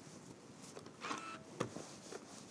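Faint handling sounds of pressing a quilt block with a clothes iron: a brief rustle of fabric and the iron about a second in, then a light knock as the iron meets the pressing board.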